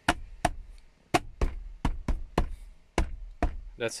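Plastic trim cover of a 2020 Ford F-150's rear center console being knocked and pressed into place by hand: a series of about eleven sharp knocks, two or three a second.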